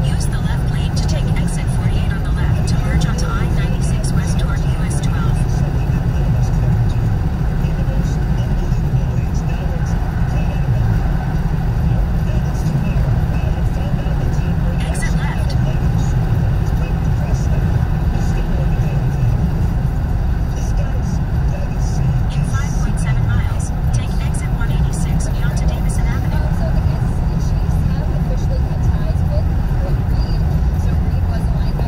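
Steady low road and engine rumble inside a car cabin, driving at freeway speed.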